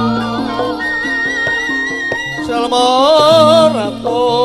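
Javanese gamelan music accompanying a wayang kulit performance, with a high voice singing wavering, held lines. The singing is loudest in a sustained phrase near the end.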